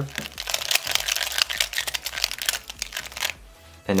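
A Square-1 puzzle being turned quickly by hand: a dense run of plastic clicks and clacks from the layer turns and slice moves of a parity sequence, stopping a little before the end.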